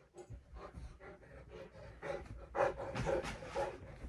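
Large Newfoundland dog panting close to the microphone, rhythmic breaths that grow louder about halfway through.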